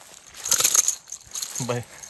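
Dry grass rustling as someone walks through it, a short crackling burst about half a second in, followed by a man's brief word near the end.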